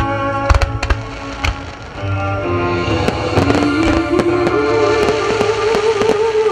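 Fireworks bursting in a string of sharp bangs, clustered in the first second and a half and again around three to four seconds in, over loud recorded music for the show that carries a sustained melody line in the second half.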